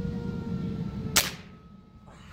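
A single shot from a Mendoza Quetzalcoatl air rifle: one sharp crack a little over a second in.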